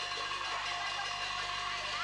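Steady hiss with a couple of faint held tones under it, the noise of an old videotape recording with no music or voice at this moment.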